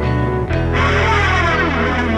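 Rock band playing with electric guitars. A new chord comes in about half a second in, followed by notes sliding downward.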